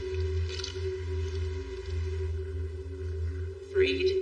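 Film soundtrack: a low, steady droning hum with a few held tones above it, with a brief, sharper sound rising in pitch just before the end.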